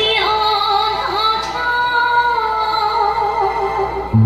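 A woman singing into a microphone over a PA system, drawing out long, wavering held notes; the voice stops just before the end.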